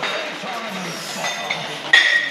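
Faint voices murmuring in a large hall. At the very end comes a sudden metallic clink with a short ring as the loaded barbell breaks from the floor at the start of a snatch.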